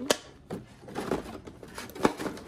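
Clicks and knocks from a thin clear plastic cosmetics tray being handled as a cream jar is pried out of its slot. A sharp click comes just after the start, a cluster of smaller knocks and rustles follows through the middle, and another sharp click comes at the end.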